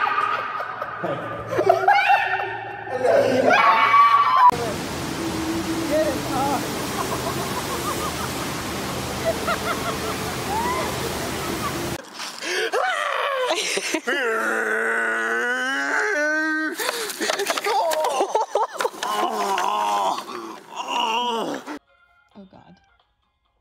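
People's voices and laughter over several short clips, with a stretch of steady noise from about 4 to 12 seconds in and a long wavering cry from about 14 to 17 seconds in.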